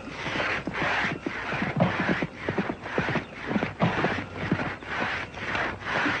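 Two-man crosscut saw cutting through a big redwood trunk, a steady rasping rhythm of about two strokes a second.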